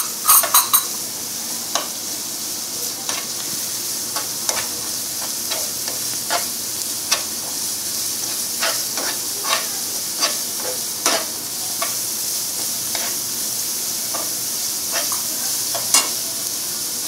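Chopped onion and ginger-garlic paste sizzling in hot oil in a non-stick frying pan, a steady hiss, while a steel spatula stirs and scrapes the pan in irregular strokes about once a second.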